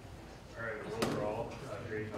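Indistinct voices talking quietly in a large room, with one sharp click about a second in.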